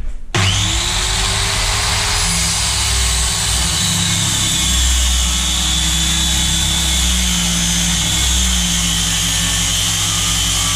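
Corded circular saw starting up about a third of a second in and running steadily as it cuts through 12 mm plywood, its motor whine rising at start-up and then holding under the load of the cut.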